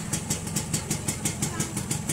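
Suzuki Sport 120's two-stroke single-cylinder engine idling steadily through its exhaust, with an even, rapid pulse.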